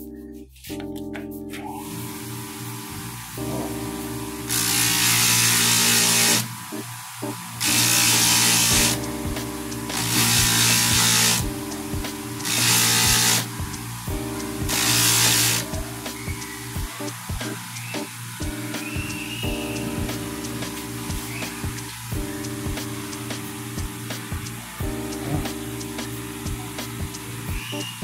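Bench sharpening machine running while the jaws of a steel cuticle nipper are sanded on its abrasive for a fine finish. There are five separate grinding hisses of about a second each, then lighter, scattered contact. Background music plays throughout.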